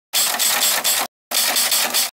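An edited-in mechanical sound effect: two bursts of rapid, hissy clicking, each about a second long, with a short break between them.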